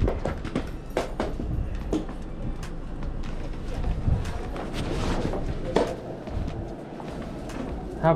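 Glass entrance doors being pulled open by their metal handles, with repeated clicks and knocks of the handles and latches, and footsteps and clothing rustle close by.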